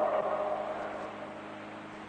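A pause in a 1955 sermon recording: the last word dies away in the hall's echo over about the first second, leaving the tape's steady hiss and a low hum.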